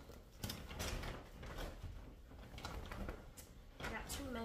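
Grocery bag rustling and crinkling as items are pulled out of it and handled, in irregular bursts.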